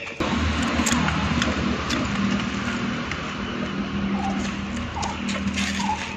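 A motor vehicle engine running steadily close by, a low even hum that starts abruptly at the beginning and eases slightly toward the end, with a few faint clicks over it.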